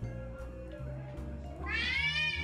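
Background music with steady bass notes. Near the end, a baby's high-pitched squeal starts and rises in pitch, the loudest sound here.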